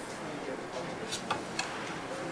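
A few short, light clicks in quick succession just past the middle, over faint background voices.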